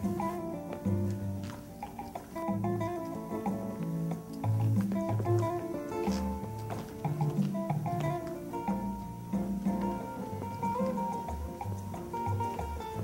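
Instrumental konpa dance music: plucked guitar lines over a repeating bass pattern.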